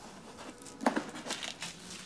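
Small plastic packets crinkling and rustling as they are handled, in short intermittent bursts.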